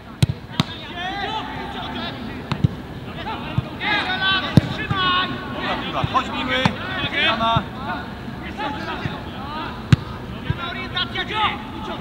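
Footballs being kicked during a training drill: several sharp thuds at irregular intervals, with men shouting to each other throughout.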